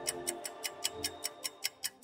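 Clock-style ticking of a countdown timer sound effect, about five quick ticks a second, over soft background music.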